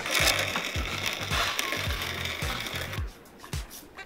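A green bench leather-working machine with a roller knife runs steadily as an insole board is fed through it, trimming a thin strip off the edge. It stops about three seconds in. A steady low music beat runs underneath.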